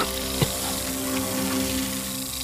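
Background film score: sustained low drone tones under a steady, even hiss, with a single short knock about half a second in.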